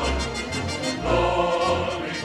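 Choir singing held chords with orchestra, the harmony moving to a new chord about a second in.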